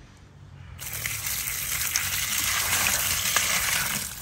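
Kitchen waste water poured from a plastic container, splashing onto food scraps in a plastic bucket. The pour starts about a second in, then builds and runs steadily.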